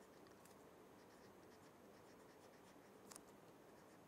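Faint scratching of a pen writing on paper, with one slightly louder stroke about three seconds in.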